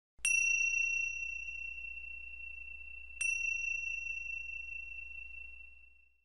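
A high, clear chime struck twice, about three seconds apart, each stroke ringing out with a single strong pitch and slowly fading, over a faint low hum.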